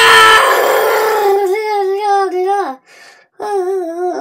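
A child's voice holding a long, high, wavering note. It breaks off a little under three seconds in and starts again on the same wavering note after a short pause.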